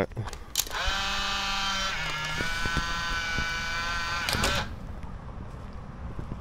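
Camera shutter clicks at the start and again near the end. Between them a steady pitched tone runs for about four seconds and steps down in pitch about two seconds in.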